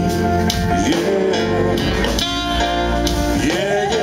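Live blues band playing: electric guitar over bass and drums, with sliding, bent notes and regular drum and cymbal hits.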